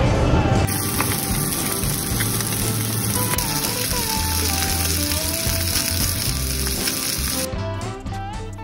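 Sea bass fillet sizzling in a frying pan, starting about a second in and cutting off near the end, with background music playing over it.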